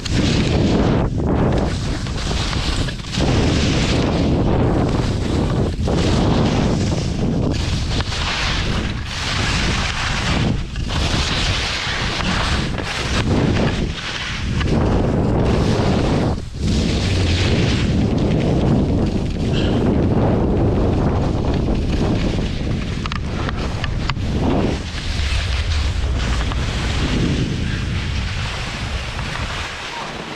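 Wind buffeting an action camera's microphone at skiing speed, with the hiss and scrape of skis on chopped snow, surging and easing with each turn. It dips briefly several times and eases off slightly near the end as the skier slows.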